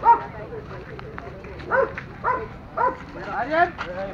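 A dog barking: one loud bark at the very start, then a run of three short barks about half a second apart in the second half, with people talking around it.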